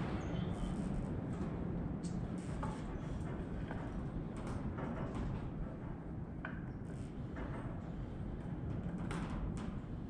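Scattered light clicks and taps of small planter parts being handled and fitted together, about eight over the span, over a steady low rumble.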